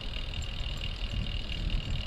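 Low, steady rumble of a recumbent trike rolling along a paved path, with tyre and wind noise on the handlebar microphone and a faint steady high tone above it.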